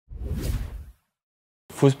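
A whoosh sound effect lasting under a second, then a moment of dead silence before a man starts speaking near the end.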